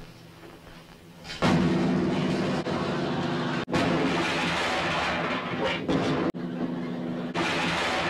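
A grand piano being smashed with a sledgehammer: loud crashing with the strings jangling and ringing. It starts about a second and a half in and breaks off briefly twice.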